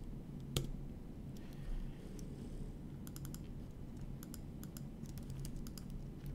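Computer keyboard keystrokes: one sharp click about half a second in, then scattered key taps with a quick run of them around the middle.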